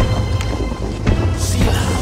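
Reggae/dancehall soundtrack music in an instrumental stretch of its intro: deep steady bass, a few sharp hits, and a thunderstorm-like rumble and hiss in the mix.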